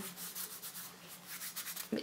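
Faint rubbing and rustling of hands handling a leather purse, Mulberry's French purse in oak leather, fingers moving over its leather and fabric-lined compartment.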